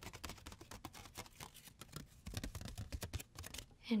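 Fingers tapping on the foil wrapper of a chocolate sweet held close to the microphone: a rapid, irregular run of small crisp taps, with a few soft low thuds about halfway through.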